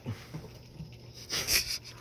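A person breathing hard close to the microphone after heavy work, with a sharp, loud exhale about a second and a half in.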